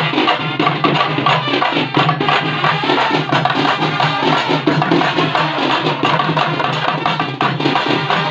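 Sri Lankan papare brass band playing kawadi music: trumpets carrying the tune over hand-struck double-headed drums keeping a steady beat.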